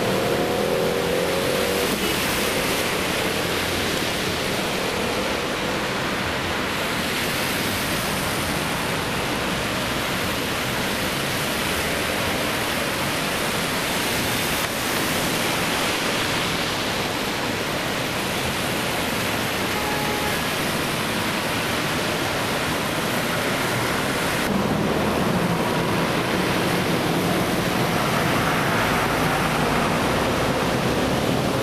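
Traffic driving through deep flood water on a highway: a steady rush of tyres splashing and engines running, with abrupt shifts where the footage is cut.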